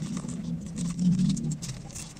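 Cigarette-pack paper crinkling and crackling in quick small ticks as fingers fold and press it, over a low hum that comes and goes.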